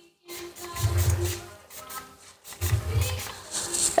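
Music playing in the background along with rustling and handling noise; the sound drops out briefly at the start and again about two and a half seconds in.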